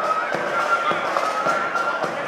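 Marching flute band playing a high flute melody over a steady, evenly spaced drum beat.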